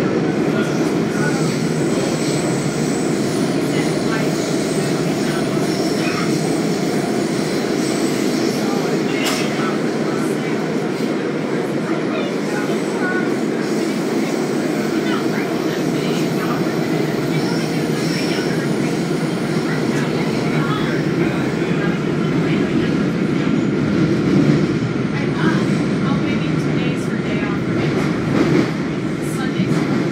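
WMATA Kawasaki 7000-series Metro railcar running between stations, heard from inside the car: a steady rumble of wheels on rail, with faint high whines coming and going.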